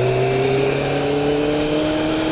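Motorcycle engine running at steady cruise, its note falling slowly in pitch as the bike eases off, with steady wind rush behind it.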